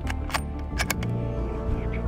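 A bolt-action rifle's bolt being worked to chamber another round: a quick run of about four sharp metallic clicks in the first second. Background music with steady sustained tones plays throughout.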